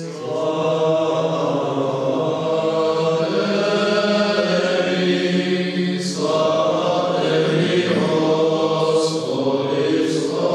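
Men's voices chanting a Byzantine-rite liturgical chant in sustained, slowly moving notes, broken briefly by consonants about six and nine seconds in.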